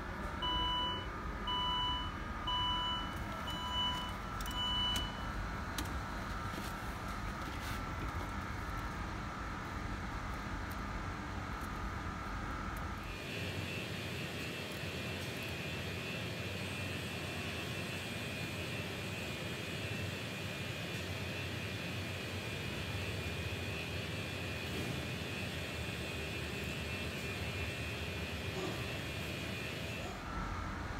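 Five short electronic beeps, evenly spaced about three quarters of a second apart, over a steady background hum. The hum changes character about thirteen seconds in and then runs on.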